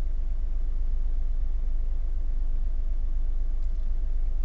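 A 2000 Honda Odyssey's 3.5-litre V6 idling at about 1000 rpm, heard from inside the cabin as a steady low rumble. The engine has logged misfire codes on several cylinders, which the owner reads as a lot of random misfires.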